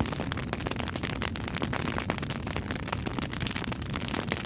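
Fire sound effect: a dense, steady crackle of many quick snaps over a low rumble.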